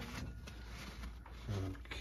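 Faint rubbing and handling noise from wiping the inside of a microwave, with a brief low hum of a voice about one and a half seconds in.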